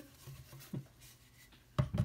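Faint rubbing and handling sounds as a tight-fitting container is worked open by hand, then a sharp knock near the end.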